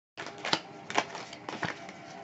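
Handling noise close to the microphone: a few sharp clicks and taps, the loudest about half a second, one second and one and a half seconds in, as a hand works at the camera.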